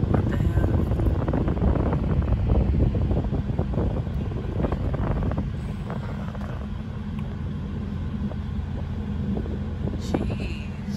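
Car driving on a wet road, heard from inside the cabin: a steady low rumble of engine and tyres, with a scatter of small crackling clicks over the first half that eases off about halfway through.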